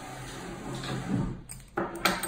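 Wooden 48-inch rigid heddle loom being pushed along a wooden tabletop, a low scraping rumble, with a sharp knock near the end.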